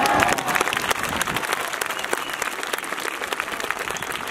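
Audience of children and adults applauding: dense, steady clapping, with a few high voices calling out right at the start.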